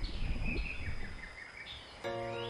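Birds chirping over a low, uneven outdoor rumble, the whole fading away toward the end.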